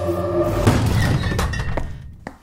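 Glass shattering: a noisy crash about half a second in, with a few sharp clinks, dying away toward the end, over background music.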